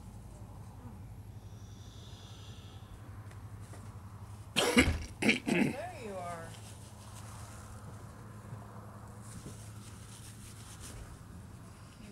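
A person gives a sudden loud cough or two about four and a half seconds in, ending in a brief voiced sound, over a steady low hum.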